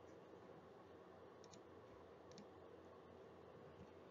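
Near silence: room tone with a few faint clicks, a pair about a second and a half in and another a second later.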